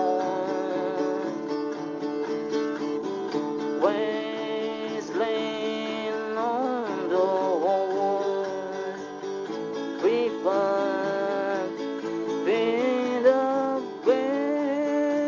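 Instrumental music: guitar chords under a melody line that slides and bends between notes.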